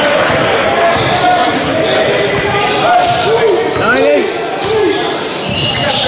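Basketball dribbled and bouncing on a hardwood gym floor during a game, amid players and onlookers calling out.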